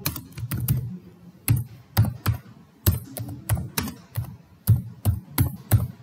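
Typing on a computer keyboard: a dozen or so sharp key clicks at an uneven pace, in short runs with brief pauses between.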